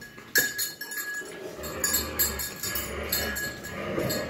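Metal tags on a dog's collar jingling in quick, light clinks as the dog is rubbed and moves her head, with faint sounds from the dog underneath.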